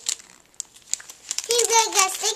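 Clear plastic cellophane sleeve crinkling in the hands, a scatter of small crackles. About a second and a half in, a child's high voice starts.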